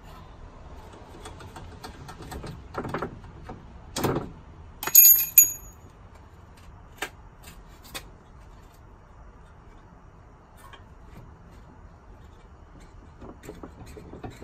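Metal clanks and knocks as a socket extension and a Honda Civic front strut assembly are worked loose from the steering knuckle. The loudest sound is one bright, ringing metallic clang about five seconds in. A couple of sharp clicks follow, then only faint handling.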